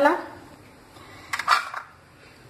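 A brief scrape of a metal spoon against a small bowl, lasting about half a second, about one and a half seconds in, as ground garam masala is sprinkled over dal.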